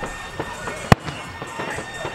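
A single sharp firework bang a little under a second in, over voices and music in the background.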